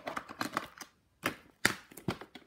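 Hard plastic VHS clamshell case and cassette being handled: a quick clatter of small clicks and rattles, with two sharper knocks in the second half.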